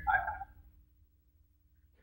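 A voice trails off in the first half-second, then near silence with only a faint steady hum.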